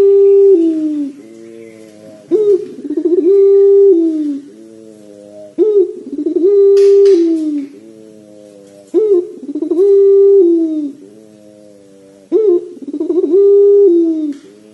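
A caged ringneck (Barbary) dove, a 'puter', giving the long 'pelung' coo. The phrase comes about every three and a half seconds, five times. Each opens with a short broken lead-in, then holds a long steady note that drops in pitch at its close.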